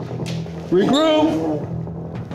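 Young tigress giving one drawn-out vocal call of protest at the vaccine injection, lasting just under a second and rising then falling in pitch.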